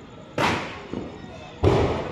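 Firecrackers going off in the distance: two sharp bangs about a second and a quarter apart, each with a trailing echo, and a fainter pop between them.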